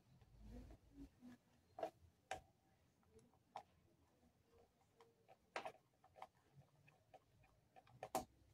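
Near silence broken by a few faint, irregular clicks and creaks: a screwdriver turning a screw into a plastic bucket lid.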